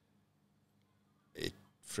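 A pause with only a faint low hum, then, about one and a half seconds in, a brief throaty vocal sound from the man at the microphone, and right at the end the first sound of his next words.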